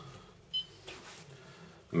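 A counting scale gives one short, high beep about half a second in, signalling that it has finished weighing the 100-coupon calibration sample.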